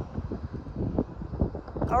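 Wind buffeting the microphone: an uneven low rumble that rises and falls in gusts. A woman's voice starts just at the end.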